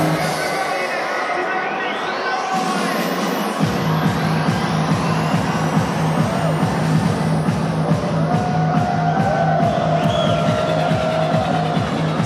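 Electronic dance music with a steady beat; the bass drops out at the start, a rising sweep builds, and the bass kicks back in about three and a half seconds in.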